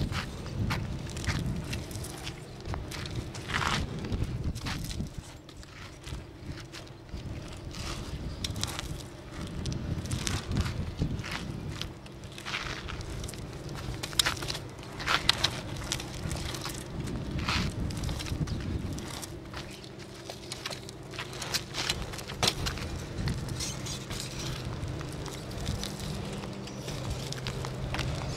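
BMX bike ridden in a flatland front-wheel trick run on asphalt: tyres rolling and scuffing, with irregular clicks, taps and scrapes from the bike and the rider's feet, over a low steady hum.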